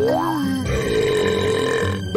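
Cartoon burp sound effect, a long steady belch held for over a second after a short vocal sound, from a character who has just gulped down a pile of hot dogs, with light background music underneath.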